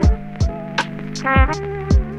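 Lofi hip-hop beat played on a Roland SP-404SX sampler: a looping drum pattern of kick drums and hi-hats, with about four kick hits, under sustained sampled chord chops triggered from the pads.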